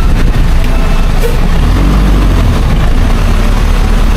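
Bus engine and road noise heard from inside the bus: a loud, steady low rumble.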